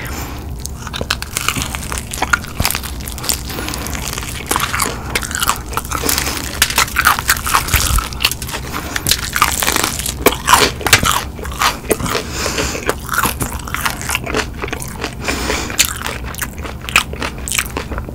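Close-miked biting and chewing of cheese-sauce-covered fried chicken wings, the crispy breading crunching in many sharp, irregular crackles that are thickest in the middle.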